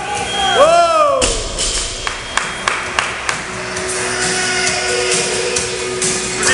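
A short shout, then a 55 kg barbell with bumper plates dropped onto the rubber gym floor about a second in, followed by a couple of seconds of the plates bouncing and clattering. Music plays in the background.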